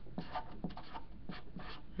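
Marker writing on paper: a series of short, faint scratching strokes as a few letters are written.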